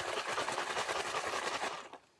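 Two plastic sippy cups of milk shaken hard and fast, the liquid sloshing and the cups rattling in a quick, steady rhythm that dies away just before the end. The shaking mixes in scoops of toddler milk powder.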